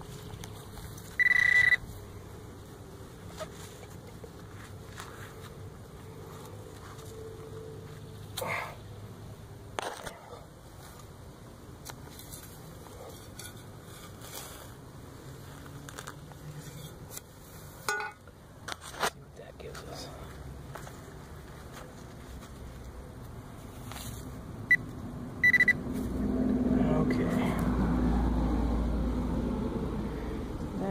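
A handheld metal-detector pinpointer gives a short high beep about a second and a half in, and two more quick beeps near 25 seconds, signalling metal in the dug hole, amid soft scrapes and clicks of digging in soil. In the last few seconds a louder low rumble rises.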